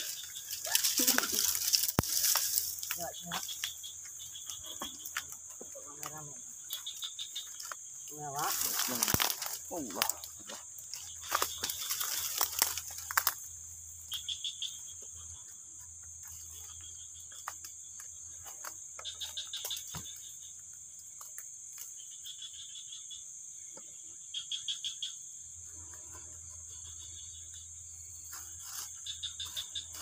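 Crickets at night: a steady high buzz with repeated pulsed chirps. Over it, bamboo leaves rustle and dry leaf litter crackles as someone scrabbles in the ground by hand, busiest in the first dozen seconds and sparser after.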